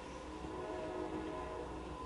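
Distant horn blowing a chord of several steady tones in a long blast.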